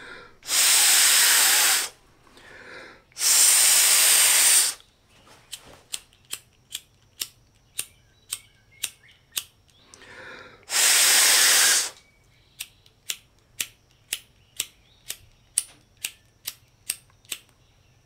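Hard breaths blown through a wet disposable lighter's wheel and flint to drive the water out: three long blows. Between them, the steel spark wheel is flicked again and again, sharp clicks about two a second, as the drying lighter starts to spark.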